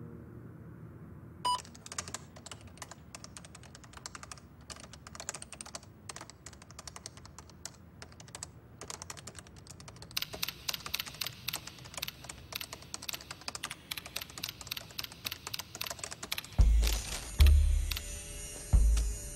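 Typing on a keyboard: quick runs of key clicks, sparse at first and getting faster and denser about halfway through. A short beep with a click comes at the start of the typing, and deep booming beats come in near the end and are the loudest sound.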